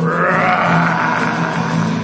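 A person's voice imitating a lion's roar: one long, rough roar of about two seconds that swells at the start and slowly fades.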